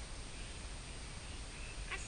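Faint outdoor garden ambience: a steady low rumble of wind on the microphone, with faint bird calls and one short, high call near the end.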